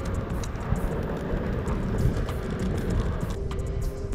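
Ride noise from a Onewheel Pint on a concrete sidewalk: a steady low rumble with a faint steady whine that drops a little in pitch near the end.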